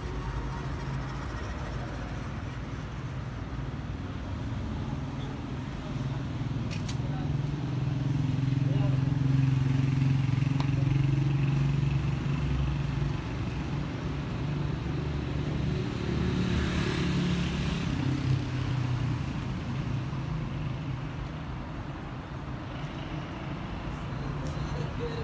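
Street traffic: car engines running and passing along the road, a low hum that swells about a third of the way in and again after two thirds.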